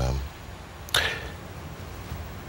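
A man's drawn-out hesitation 'uh' trailing off, then a pause broken about a second in by one short hiss of breath.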